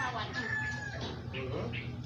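A rooster crowing: the drawn-out end of a crow, held and falling slightly, that stops about a second in, with people's voices in the background.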